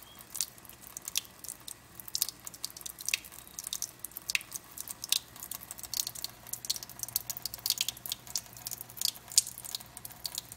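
A cat lapping water from a thin stream running from a kitchen faucet: an irregular series of small, sharp wet clicks, several a second, with the stream trickling into the sink.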